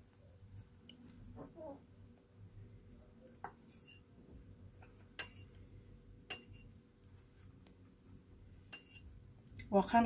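A metal spoon clinking a few times against a ceramic bowl of soup as it scoops, sharp separate clinks with quiet between, the loudest about five seconds in.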